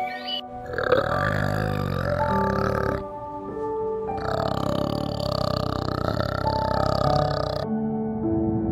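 Adult male orangutan giving deep, throaty grunting calls in two bouts, the second breaking off suddenly near the end, over soft background music.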